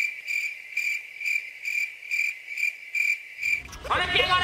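Cricket chirping sound effect: a high chirp pulsing evenly about three times a second with nothing else behind it, the comic 'awkward silence' cue.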